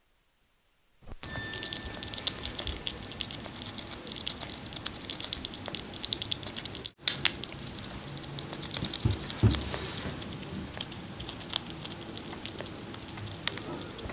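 A chipmunk chewing pomegranate seeds close to the microphone: a dense run of small crisp clicks and crunches that starts about a second in, with a brief break about halfway.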